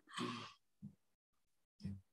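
A short, soft sigh-like exhale picked up by a desk microphone, about half a second long, followed by a faint brief murmur near the end.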